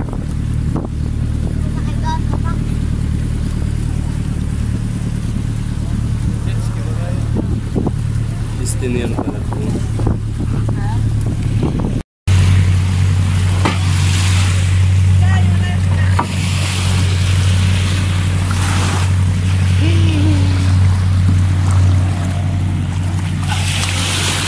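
Outrigger boat's (bangka) engine running with a steady low drone. After a cut partway through, the drone is louder, with a wash of surf and scattered voices over it.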